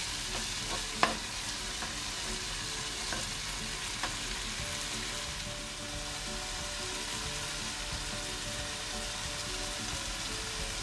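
Shredded chicken, onion and tomato sizzling steadily in a nonstick sauté pan as a spatula stirs them, with a sharp tap of the spatula against the pan about a second in and a fainter one later.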